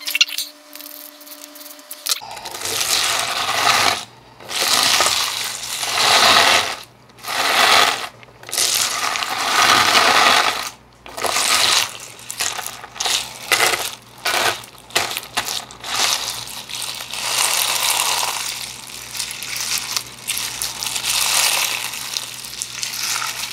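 Clear-based slime packed with lava rocks being squeezed and kneaded by hand, crunching and crackling in irregular squeezes that start about two seconds in.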